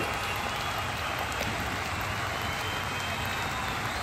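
Steady, even background hiss with no distinct sound events.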